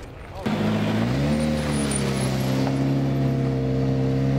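A rally car's engine cuts in suddenly about half a second in, rises in pitch for a moment, then runs at a steady idle.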